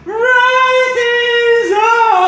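A man singing unaccompanied in a high voice, holding one long high note for about a second and a half, then moving to a new note that rises and begins to fall near the end.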